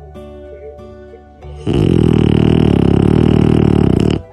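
French bulldog puppy snoring: one long, loud, fluttering snore starting a little under two seconds in and lasting about two and a half seconds, over background music.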